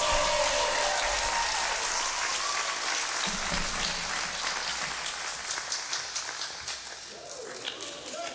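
Audience applauding at the end of a song, the clapping slowly thinning and fading with a few separate claps near the end.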